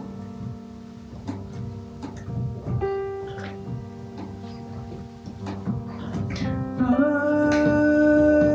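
Chamber music for piano and string trio playing back: repeated soft piano chords under long held notes. A sustained string-like melody line comes in about 7 seconds in and the music gets louder.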